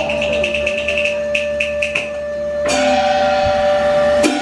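Taiwanese opera accompaniment playing an instrumental passage between sung lines: one long held note under a fast rattling percussion roll that slows to three separate taps in the first two seconds, then a sharp strike a little after halfway.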